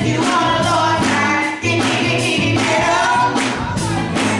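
Small group of women singing a gospel song together through microphones, carried by a steady beat of hand claps.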